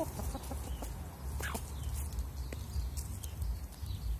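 Hens clucking while they feed, with a few short clucks at the start and a longer call falling in pitch about a second and a half in, over a steady low rumble.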